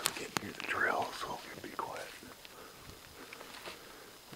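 Quiet whispered speech, with two sharp clicks at the very start.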